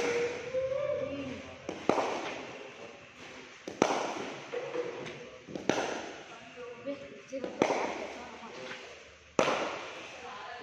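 Cricket bat knocking a leather cricket ball in a drop-knocking drill: six sharp knocks, one about every two seconds, each echoing off a large metal-roofed shed.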